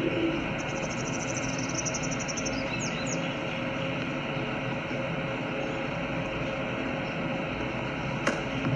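A small bird giving a rapid, high trill for about two seconds, then two or three short falling chirps, over a steady outdoor background noise.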